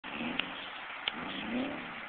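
A Subaru's boxer engine revving at a distance, its pitch rising in the second half, with two sharp clicks in the first second.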